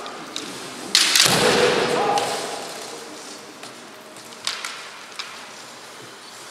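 A kendo fencer's loud kiai shout about a second in, lasting about a second, followed by a few short, light clacks of bamboo shinai touching.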